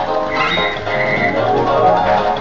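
Barcrest Rainbow Riches fruit machine playing its electronic music and jingles during the gamble feature, with a short high held note about halfway through.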